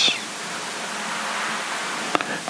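Steady, even hiss of background noise with no speech.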